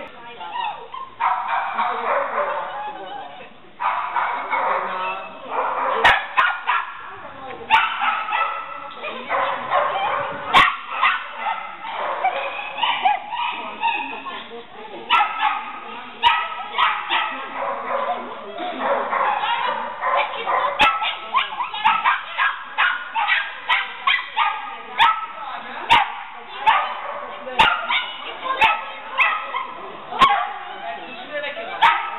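Shetland sheepdogs barking over and over, high-pitched and excited, with the barks coming thicker in the second half.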